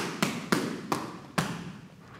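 Five sharp thuds in quick, uneven succession, each ringing off briefly, the last about a second and a half in.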